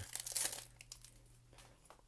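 Foil wrapper of a SkyBox basketball card pack crinkling and tearing as it is ripped open, loudest about half a second in, then dying away.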